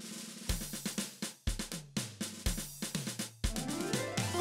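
Intro music with a drum-kit beat: a bass drum about once a second with snare hits in between, and a rising glide near the end leading into the next musical phrase.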